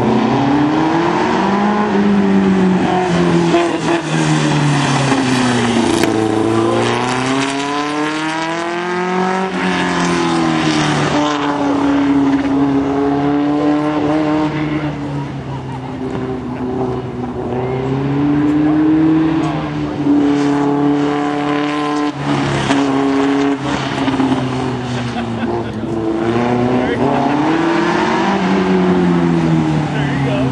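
Engine of a VW-based Manx-style dune buggy being driven hard through an autocross course, its pitch climbing under acceleration and dropping off again for the turns, several times over.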